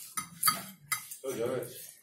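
Dishes and cutlery clinking, three sharp clinks in the first second, followed by a brief murmur of voice.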